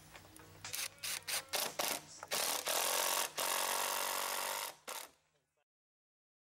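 Cordless drill driving a screw into 2x4 lumber framing: a run of short trigger bursts, then a steady drive of about two and a half seconds. One more brief burst follows, and then it stops.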